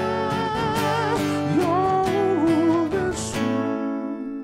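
A male voice sings a long, wordless melisma with heavy vibrato, sliding up to a higher note partway through and holding it, over sustained chords on an electric-acoustic guitar; the vocal fades out near the end, leaving the guitar ringing.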